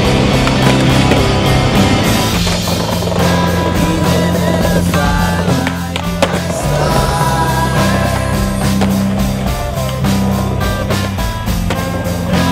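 Skateboard sounds over a music track with steady bass notes: wheels rolling on concrete and the board knocking and clacking, with one sharp, loud clack about six seconds in.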